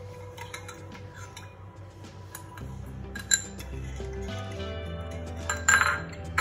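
Background music over a spoon clinking against a glass bowl as milk, sugar and yeast are stirred together, with sharper clinks about three seconds in and near the end.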